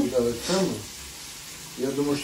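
Fish frying in a pan, a faint steady sizzle that comes through in a lull between voices.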